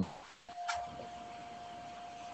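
A steady tone held at one pitch that cuts back in about half a second in after a brief drop-out, with a single click just after.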